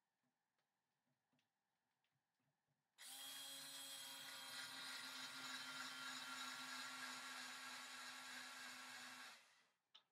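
Handheld cordless drill spinning a bit in a homemade 3D-printed router jig against MDF board: it starts suddenly about three seconds in, runs at steady speed for about six seconds, then winds down near the end. The makeshift router is not cutting the MDF well.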